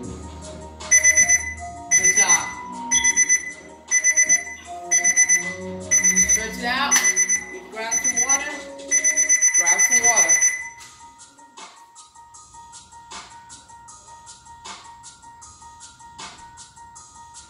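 Electronic alarm-style beeping, high-pitched and loud, in short rapid groups about once a second. Near the middle it runs into one unbroken stretch of beeps and stops abruptly, over a hip-hop instrumental beat.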